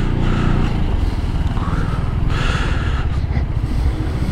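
Zontes 350E scooter's single-cylinder engine running at low speed in slow traffic, a steady low rumble that swells slightly as it picks up speed early on.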